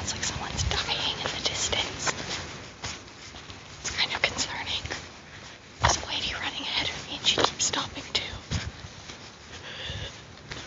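Breathy, whisper-like sounds of a person walking uphill, broken by irregular knocks and rustles of a handheld phone.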